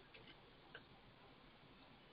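Near silence: faint room tone with a few very faint clicks in the first second.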